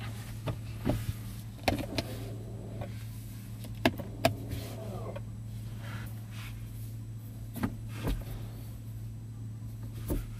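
Clicks and clunks from a Nissan X-Trail's centre console controls worked by hand. They come in four pairs, each a few tenths of a second apart, over a steady low hum in the cabin.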